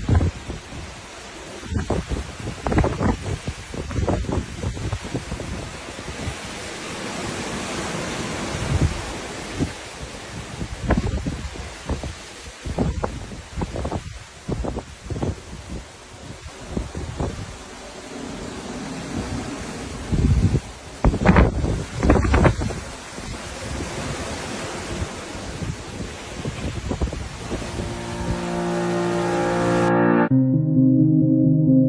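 Wind buffeting a phone's microphone: a rushing hiss broken by irregular gusty thumps, with a burst of stronger gusts about two-thirds of the way through. Music fades in near the end.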